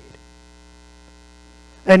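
Steady electrical mains hum, a low buzz with many thin, unchanging overtones. A man's voice begins near the end.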